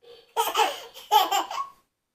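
A toddler laughing in two short bursts of giggles.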